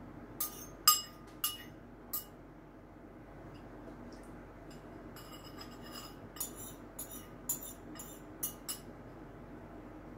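A spoon clinking against a soup bowl: four sharp clinks in the first two seconds, then a quicker run of lighter clinks from about five to nine seconds in.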